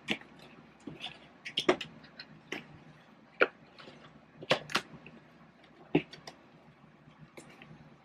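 Cardboard LEGO advent calendar box being handled and pried at for its taped flap: irregular taps, clicks and short scrapes of cardboard under the fingers, with a few sharper snaps around the middle.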